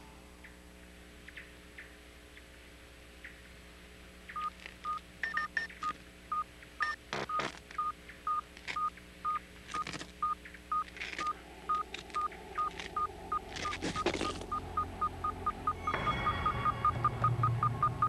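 Electronic beeping at one steady pitch. It starts about four seconds in at about two beeps a second and quickens to about four a second, with a low rumble swelling under it near the end.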